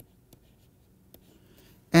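Stylus writing on a pen tablet: a few faint taps and light scratches as an equation is written.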